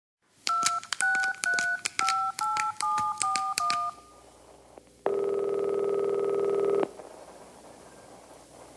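A telephone number keyed in on a touch-tone phone: about eight quick two-note dialing beeps, each starting with a key click. After a short pause comes one ring of the ringback tone on the line, lasting just under two seconds.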